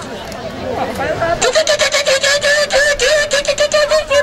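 A mamulengo puppeteer's voice for a hand puppet: indistinct vocal sounds, then from about a second and a half in one long, wavering high note that pulses quickly.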